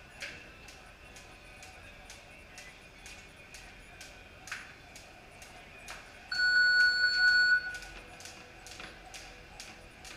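Jump ropes slapping the concrete floor in a steady rhythm, about three slaps a second. Just past the middle a loud steady electronic beep sounds for about a second and a half.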